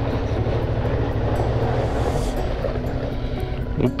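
Suzuki V-Strom 650 XT's V-twin engine running steadily at low revs as the motorcycle creeps over loose gravel.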